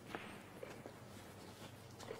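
Quiet snooker arena room tone with one sharp click shortly after the start and a few fainter ticks a little later.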